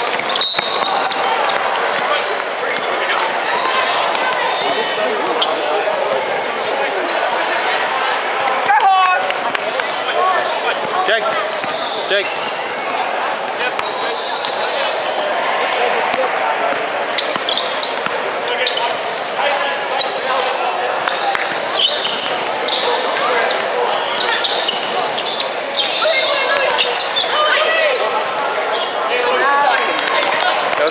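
Indoor basketball game: a ball bouncing on a hardwood court and short sharp knocks of play, under steady, indistinct chatter from players and spectators in a large hall.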